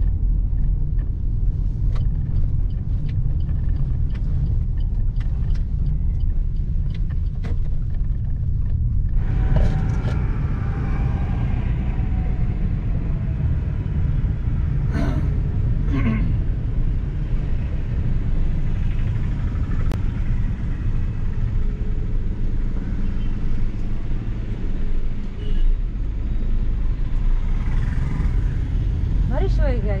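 Steady low rumble of a Suzuki Ignis's engine and tyres, heard from inside the car's cabin while driving. About a third of the way in the surrounding street traffic noise becomes louder and busier, with a few brief sharper sounds in the middle.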